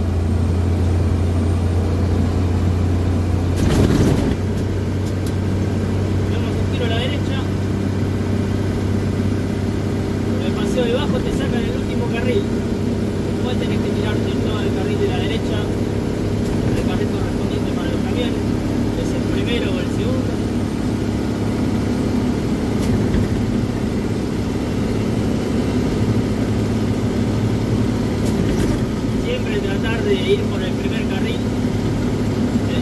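Diesel engine of an old Mercedes-Benz truck heard from inside the cab, running steadily under load while climbing a gentle grade in fifth gear. About four seconds in there is a short loud rush of noise, and the engine note changes there and again about ten seconds in.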